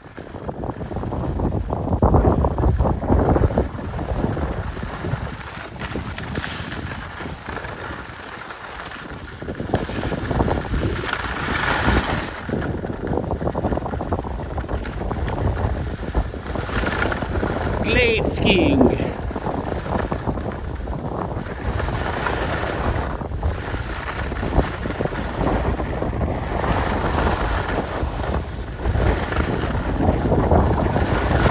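Wind noise on the microphone and skis hissing and scraping over packed snow during a downhill run, a steady rushing sound throughout. About eighteen seconds in there is a brief sliding, voice-like call.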